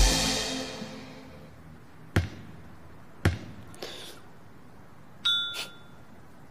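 A basketball bouncing on a hardwood gym floor: two sharp bounces about a second apart, then a fainter one, as the ball settles after a shot. Music fades out at the start, and a short high squeak comes near the end.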